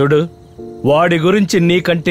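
Speech: a man talking in film dialogue, with a short pause holding a steady low tone about half a second in.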